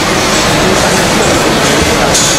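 Tea-factory production machinery running with a loud, steady noise.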